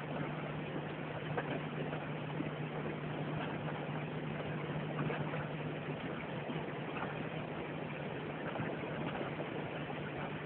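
Boat engine idling, a steady low hum under a constant hiss, with a few faint clicks.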